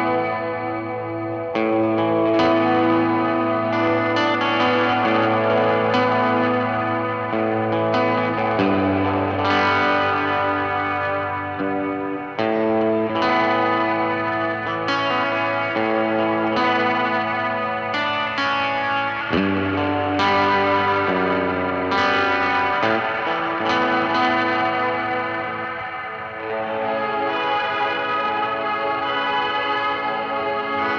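Electric guitar played through a Chase Bliss/Meris CXM 1978 studio reverb pedal: slow chords struck every few seconds, each left to ring on and overlap the next in a long, modulated reverb wash.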